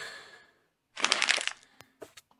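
A short crackling, crunching burst about a second in, lasting about half a second, followed by a single click.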